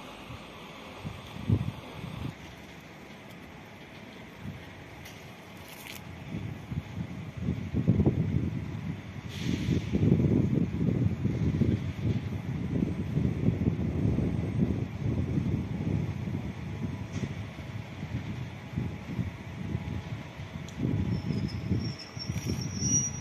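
Wind buffeting the microphone in irregular gusts from about a third of the way in, a loud fluttering low rumble over a quieter steady outdoor background.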